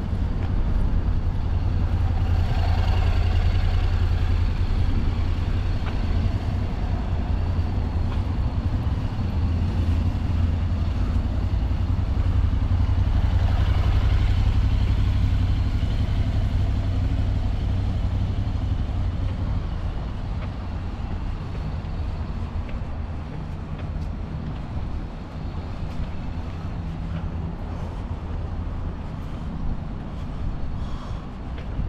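A motorcycle engine passing close by, over a steady low rumble that eases off in the last third.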